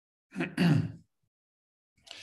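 A man clearing his throat once, a short rasp of about half a second in two quick parts.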